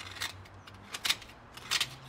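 Utility knife blade scraping in short strokes along the corner between an aluminum window frame and the wall, cutting through the seal to free the old window: three quick scrapes, the last a close double.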